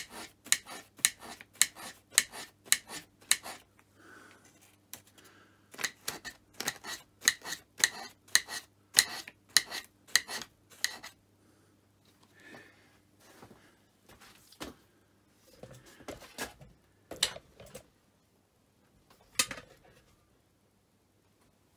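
Hand scraper rough-scraping the cast-iron underside of a Myford Super 7 tailstock base: quick, sharp scraping strokes about three a second, in two runs with a short pause between, then fewer, scattered strokes.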